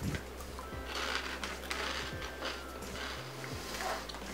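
Chewing a crunchy Parmesan herb protein puff: a run of crisp crunches in the first half, then quieter chewing.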